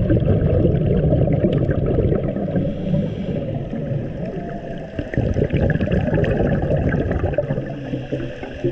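Muffled underwater water noise recorded just below the surface: a dense, steady low rush of moving water with faint scattered clicks.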